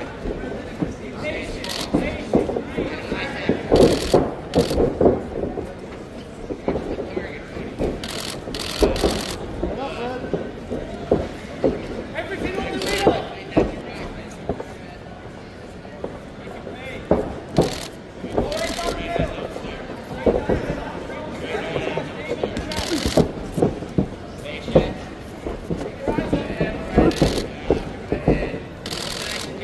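Gloved punches landing in an amateur boxing bout, heard as sharp smacks at irregular moments, over indistinct shouting voices from corners and spectators.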